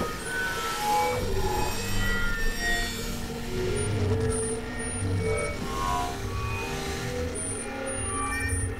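Experimental electronic synthesizer music: short, scattered tones at shifting pitches over a steady mid-pitched drone and a low pulsing bass.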